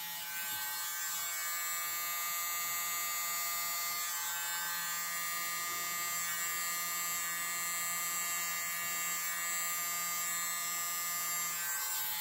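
Small handheld electric mini blower (a corded keyboard air duster) running steadily, a high motor whine made of several steady tones, blowing air to push wet paint across the canvas.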